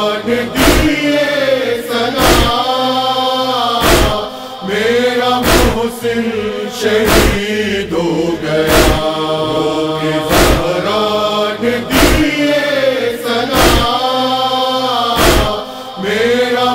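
Unaccompanied voices chanting a slow, drawn-out refrain of a Shia noha. A sharp chest-beating (matam) slap marks the beat about every one and a half seconds.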